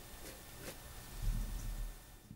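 Flour-coated small anchovies shaken in a wire-mesh sieve, a soft faint shushing of loose flour falling through with a few light taps. A low, dull rumble comes in about a second in.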